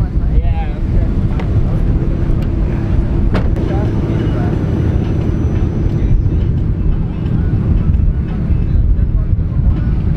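Steady low rumble of car engines idling in a queue of cars, with laughter near the start.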